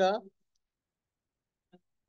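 A voice finishing a spoken word, then near silence with one tiny faint blip shortly before the end.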